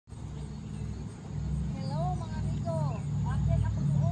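A person's voice speaking in short phrases from a little under two seconds in, over a steady low rumble.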